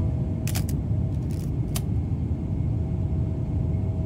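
Steady low rumble of an airliner's engines and rushing air heard inside the cabin, with a faint steady whine above it. A few light clicks come between about half a second and two seconds in.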